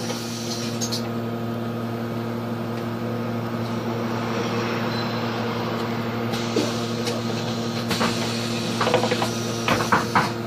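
Solaris Urbino 18 III Hybrid articulated bus idling at a stop, heard from inside at the front: a steady, even hum. A few short clicks and knocks come in the last few seconds.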